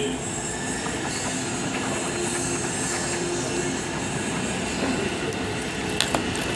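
Metal key scraping the coating off a paper scratch-off lottery ticket: a steady, rough scratching.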